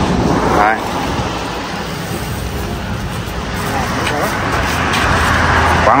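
A motor vehicle's engine running, with road noise growing louder over the second half.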